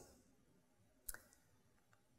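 Near silence in a pause between speech, with one short, sharp click about a second in.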